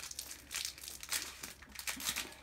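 Foil Pokémon booster-pack wrapper crinkling in the hands, a string of irregular crackles.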